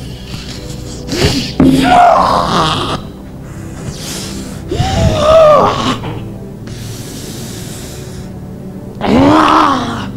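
A man's loud wordless cries, three of them, each bending up and down in pitch, over steady background music.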